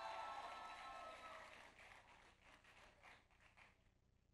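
Faint scattered clapping from the audience, dying away into near silence.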